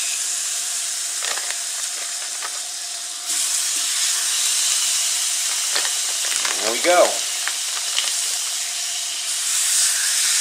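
Hot dogs sizzling in butter on a hot cast iron griddle, a steady hiss that gets louder about three seconds in.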